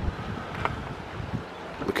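Wind buffeting the microphone in the open air, a steady rough rushing.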